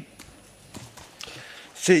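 Quiet stretch of room tone with a sharp click at the start and a few faint scattered taps, then a man's voice begins near the end with a short "Sí".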